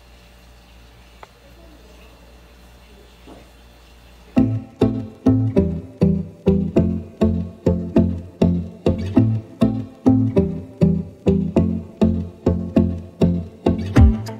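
Faint room tone, then background music comes in about four seconds in: a plucked-string bass line with a steady beat of about two and a half notes a second.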